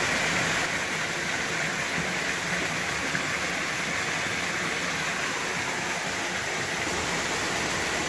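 Steady, even rush of falling and flowing creek water at a waterfall.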